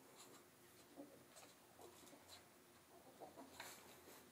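Very faint, scattered rustling and scratching of a towel as a Maltese puppy wriggles and rubs itself in it.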